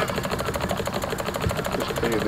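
Small live-steam engine of a model steam launch running with a fast, even ticking beat of exhaust chuffs.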